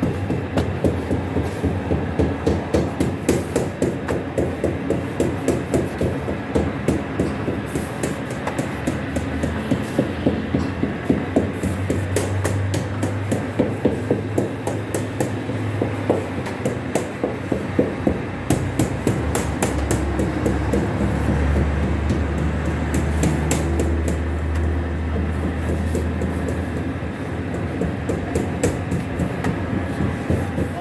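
Bakery machinery running with a fast, regular knocking over a low hum, the hum swelling in the middle and again later on.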